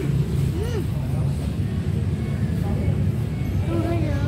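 Steady low rumble of vehicle engines from nearby road traffic, with brief snatches of children's voices.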